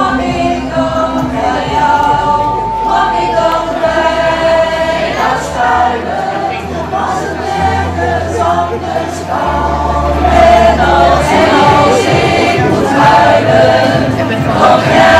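Amateur pop choir, mostly women's voices, singing in harmony over a low bass accompaniment that changes note every couple of seconds.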